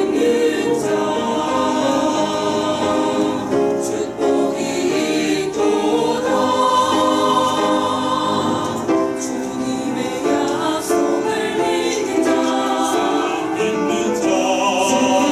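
Mixed church choir of women's and men's voices singing a sacred piece in parts, in long sustained phrases with brief breaks between them.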